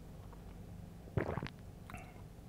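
Quiet room tone, with one brief low throat sound from a person a little past a second in.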